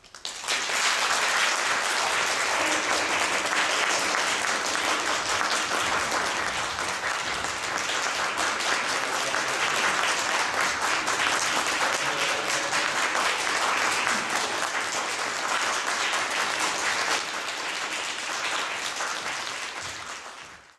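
Audience applause: many people clapping, bursting in suddenly and holding steady, then thinning slightly and tapering off near the end.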